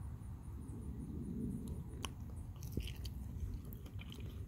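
A person chewing a bite of soft, ripe fig, quietly, with a couple of faint clicks about halfway through.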